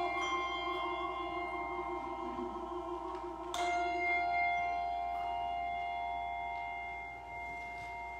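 Handbells ringing a chord that slowly fades, then a second chord struck about three and a half seconds in and left to ring out.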